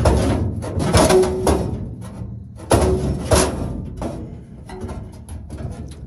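The sheet-steel dash panel of a 1971 Ford F100 cab is being wrenched and banged loose by hand after it has been cut nearly free. It goes as a run of loud metal clangs and rattles, several with a brief metallic ring, that die down toward the end.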